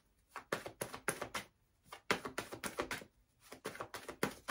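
Tarot cards being shuffled by hand in an overhand shuffle: quick runs of soft card-on-card clicks, in three bursts with two short pauses between them.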